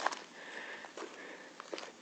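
Faint breathing close to a phone microphone, with a few soft clicks and crunches of footsteps on dry, stony ground.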